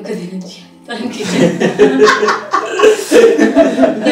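Several people laughing together, breaking out loudly about a second in, mixed with a few spoken words.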